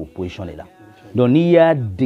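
A man's voice speaking in short syllables, then holding one long drawn-out vowel for most of a second near the end.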